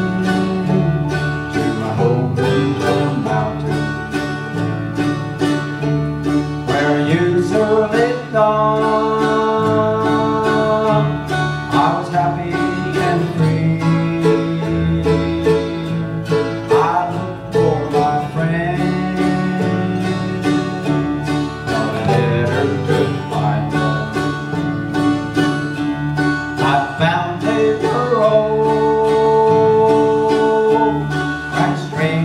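Bluegrass band playing live: fast five-string banjo picking over mandolin, acoustic guitar and bass guitar.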